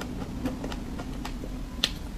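Close-miked eating of soft cream cake: faint wet chewing clicks, then one sharp mouth click near the end as the mouth opens for the next bite.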